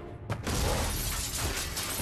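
A large glass pane of a water tank cracking and shattering: a sudden sharp crack a quarter second in, then a dense spray of breaking glass lasting about two seconds.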